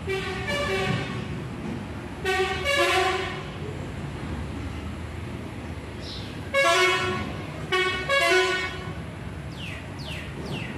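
Vehicle horns honking in short toots, about five in all, several coming in quick pairs, over steady background noise. A bird chirps briefly near the middle and again near the end.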